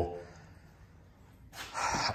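A pause of quiet room tone, then a sharp intake of breath about a second and a half in, just before speaking resumes.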